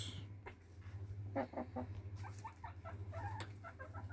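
Several faint, short bird calls in quick succession over a low, steady hum.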